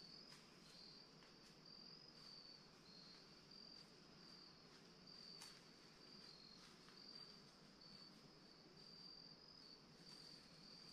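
Crickets chirping faintly: a high, thin trill repeating in short pieces with slight shifts in pitch, over near-silent woods, with a faint tick about five and a half seconds in.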